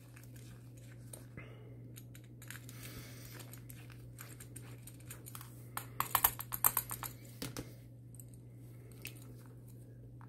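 Faint clicking and tapping as a small screwdriver and gloved hands work on a small aluminium filter case, with a quick run of sharp clicks about six seconds in. A steady low hum runs underneath.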